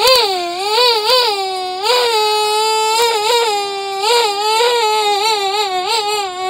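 A high-pitched, wavering, cry-like voice held without a break, its pitch swooping up and down, from the soundtrack of a children's alphabet video.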